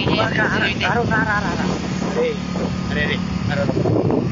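Motorcycle engine running steadily as a low hum while two men's voices talk over it.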